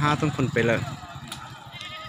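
A man's voice talking, stopping about a second in, followed by quieter outdoor background.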